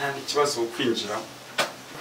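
Low voices in the first second, then a single short knock about one and a half seconds in.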